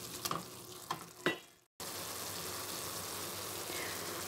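A wooden spatula taps and scrapes a few times against an aluminium pot of grated coconut and jaggery cooking on the stove. After a brief cut, the mixture sizzles steadily as it simmers in the melted jaggery.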